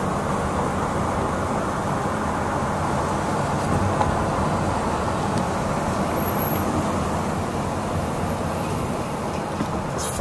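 Steady road noise and engine hum heard inside the cabin of a car moving in freeway traffic.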